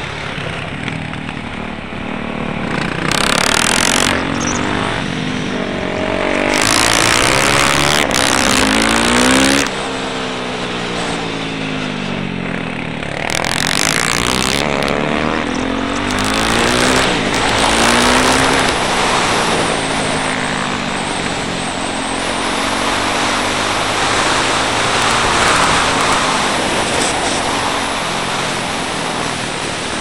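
Yamaha YZ450F single-cylinder four-stroke engine heard onboard, its pitch repeatedly rising and falling as it revs up and backs off between corners. Several bursts of wind noise on the microphone.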